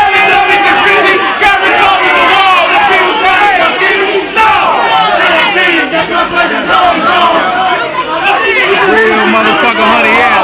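A packed crowd shouting and cheering, many voices overlapping loudly at once.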